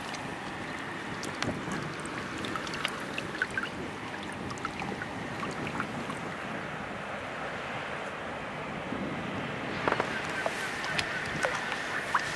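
Wind on the microphone over choppy river water lapping at the bank, with scattered small clicks and taps that come more often near the end.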